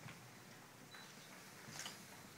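Near silence: quiet room tone with a few faint clicks, the clearest near the end.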